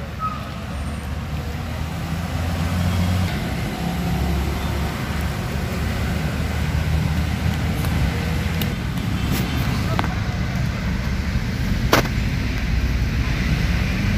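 Steady low outdoor rumble that rises and falls slightly, of the kind left by road traffic or wind on the microphone, with a sharp click about twelve seconds in.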